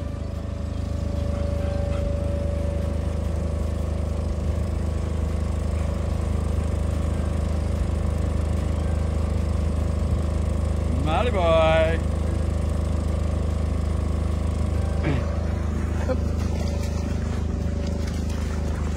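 A steady low motor drone holding several fixed tones, from an unseen engine. A short pitched call rises and falls about two-thirds of the way through.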